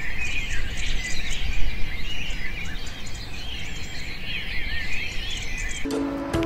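Many small birds chirping and twittering, short rapid chirps over a low steady outdoor background noise.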